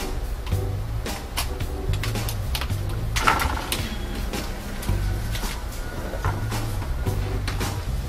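Background music with a repeating bass line and a steady beat.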